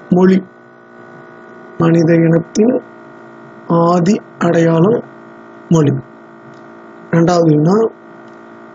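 A person speaking in short phrases with pauses between them, over a steady electrical hum that carries on through the gaps.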